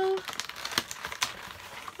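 Plastic seal wrap being crinkled and torn off a lip pencil: a run of small, irregular crackles and clicks.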